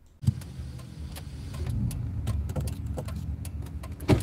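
Low, steady rumble inside a car's cabin, with scattered sharp clicks and knocks over it. It starts suddenly with a knock about a quarter second in.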